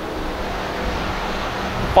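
Hobby Stock race cars running around a dirt oval: steady engine noise from the pack, with no single event standing out.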